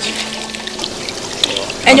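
Steady sound of water pouring and trickling into a swimming pool, under a faint held music note. A man's voice starts near the end.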